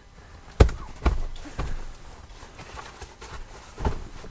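A few irregular thuds of children bouncing and shifting their weight on a foam mattress laid over a cardboard bed frame, the loudest about half a second in and another near the end.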